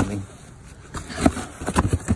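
Cardboard box flaps being handled and folded shut: a few short scuffs and knocks in the second half.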